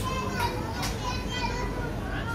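A young child talking in a high voice, with other people's voices in the background.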